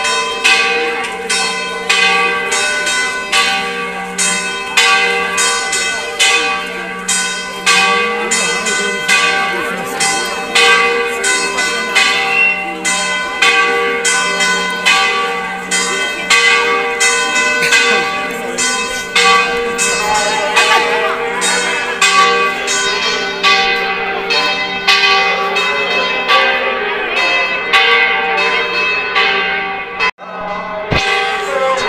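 Church bells ringing a festive peal for a religious procession: rapid, continuous strokes about two a second, each ringing on over the others.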